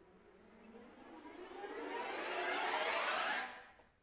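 Sampled orchestral strings playing a tremolo riser: the bowed tremolo swells steadily, growing louder and brighter for about three seconds, then cuts away quickly about three and a half seconds in.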